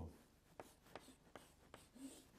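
Chalk writing on a chalkboard: faint short taps and scrapes, about five sharp ticks, as musical notes and their stems are drawn.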